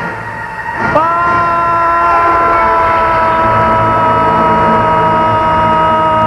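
A man's long, high-pitched scream, held at a steady pitch for about six seconds from about a second in and sagging slightly just before it stops: the cry of a man leaping off a cliff into a gorge.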